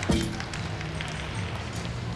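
A gymnast's feet land on a balance beam with one sharp thud just after the start, followed by a few lighter footfalls, over background music.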